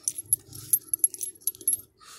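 Small metal pieces jingling: a quick, irregular run of light clinks.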